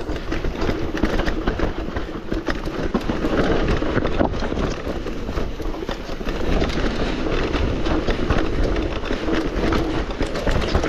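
Mountain bike clattering continuously down a rough, muddy, stony trail, heard close up from the rider's own bike: tyres over stones and roots with a rapid rattle of the chain and frame.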